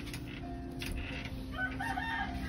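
A faint, long bird call with several held tones begins near the end, over a steady low hum.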